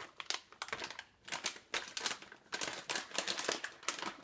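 Plastic snack-mix bag crinkling and crackling in irregular bursts as it is handled.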